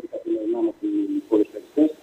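A man's voice in a muffled, narrow-band recording, with short syllables and a drawn-out held sound about a third of a second in.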